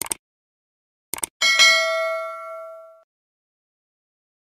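Sound effects for an animated subscribe button: a quick double click, another double click about a second in, then a bright bell-like ding that rings out and fades over about a second and a half.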